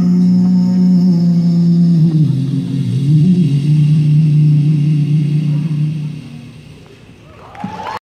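An a cappella vocal group holds the long final chord of a song through an arena sound system, a low bass voice sustained under the upper voices, dying away about six seconds in. The audience starts to cheer near the end.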